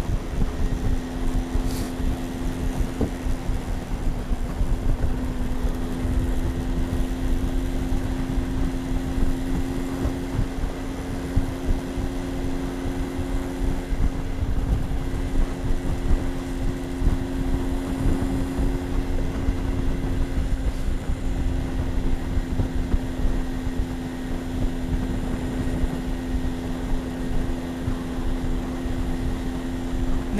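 A small motorbike engine running at steady cruising revs while riding, its even hum holding one pitch, with wind rumble on the microphone.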